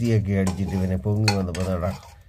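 A metal ladle stirring thick curry in a pressure cooker pot, with a couple of clinks against the metal, under a person talking.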